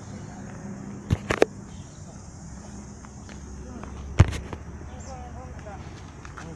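Bicycle ride filmed handheld: a steady rumble of tyres and wind, with three quick sharp clicks about a second in and one loud knock about four seconds in.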